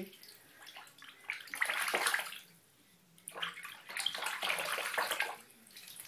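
Cayuga duck splashing the water in a bathtub as it bathes, in two spells: one about a second and a half in, and a longer one from about three seconds in lasting nearly two seconds.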